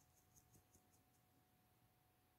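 Near silence: room tone with a faint steady hum, and a few faint quick clicks in the first second.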